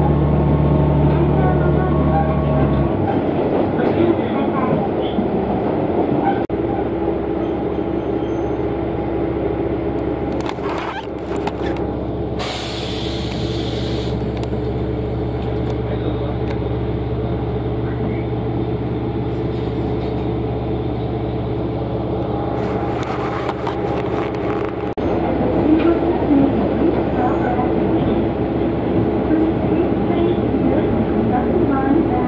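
Cabin noise of a diesel railcar under way: the engine hum is strong at first and eases off about three seconds in, leaving steady running noise, with a brief hiss about halfway and the noise rising again near the end.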